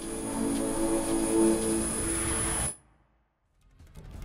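Short station-logo music sting: a held chord with a steady high tone over it, cutting off suddenly just before three seconds in.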